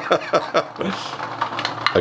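HexBug Nano vibrating robot bug buzzing and rattling against the plastic habitat pieces, a fast light clatter, with hard plastic parts being handled. A man's short chuckle comes near the start.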